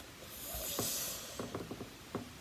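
A soft breath out through the nose, followed by a few faint clicks.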